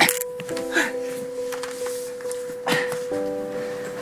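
Background music: one long held note throughout, with chords coming in twice over it, and a few short voice sounds on top.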